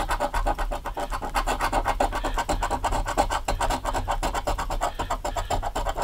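A coin scratching the latex coating off a paper scratch-off lottery ticket lying on a wooden table, in rapid, even back-and-forth strokes.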